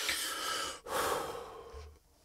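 A man's breathing, heard as two long breaths of about a second each with a short break between them, just before speaking.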